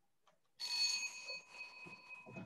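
A bell rings about half a second in, several clear ringing tones that fade away over about a second and a half: the signal that the five seconds of answering time are up.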